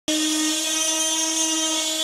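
Handheld electric power tool running on a sheet of plywood, a loud steady whine at one pitch over a rushing hiss.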